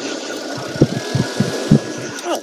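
A vehicle engine idling unevenly, a run of irregular low putts a few tenths of a second apart.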